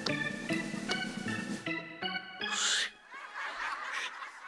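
Organ-led house-band music cue with regular beats, cutting off after about a second and a half. A brief hiss-like burst follows near the middle, then light laughter.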